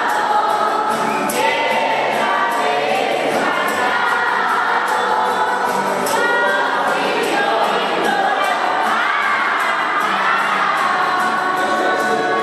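A crowd of children and adults singing a posada song together in unison, with a light ticking beat keeping time about four times a second.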